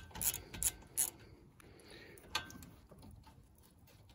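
A socket ratchet and socket working a 12 mm nut on a car's front strut bracket: a few sharp metallic clicks in the first second, one more about halfway through, then only faint handling noise.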